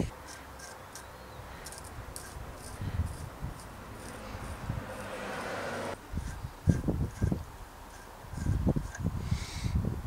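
Faint workshop handling sounds: a few dull knocks as a threaded steel hub axle is handled and set in a bench vise, over low background noise that stops abruptly about six seconds in.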